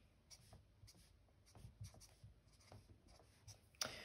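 Marker pen on a whiteboard: faint short strokes as tick marks and numbers are drawn on a graph axis, with a sharper click near the end.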